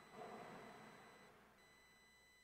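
Faint steady high-pitched electronic tone, like a held beep, over low room hiss that swells slightly in the first second and then fades.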